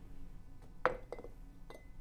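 Small glass pieces clinking as they are set down on a wooden tabletop: one sharp clink a little under a second in, a lighter one just after, and a faint tap near the end.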